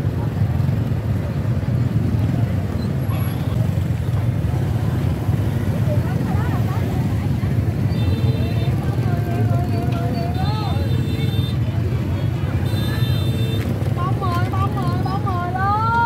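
Open-air market bustle: people talking and calling out among the stalls over a steady low rumble of motorbike engines.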